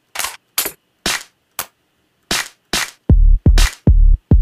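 Electronic drum samples triggered one at a time from a drum rack. There is a run of unevenly spaced snare hits, and from about three seconds in, deep booming kick drums with a long low tail come in between them.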